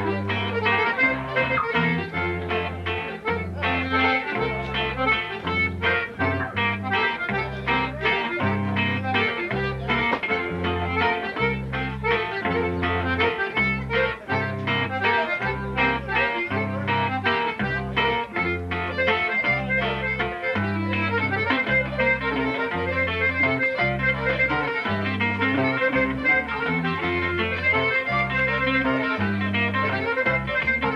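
Instrumental conjunto music: a button accordion carries the melody over a strummed bajo sexto and an electric bass line that alternates notes in a steady beat.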